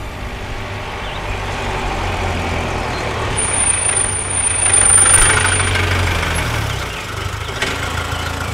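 Jeep engine running as the jeep drives up and passes close, growing louder to a peak about five seconds in, then easing off.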